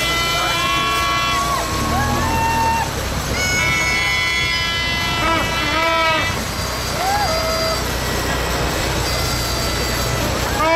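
Young people on the back of a slowly passing truck shouting and whooping in long, drawn-out calls, several at once, each call sliding down in pitch as it ends. The truck's engine runs low and steady underneath.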